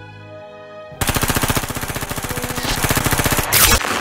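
Sound effect of automatic gunfire: a rapid, even burst of machine-gun shots for about two and a half seconds, starting a second in, then a short, sharp burst of noise near the end.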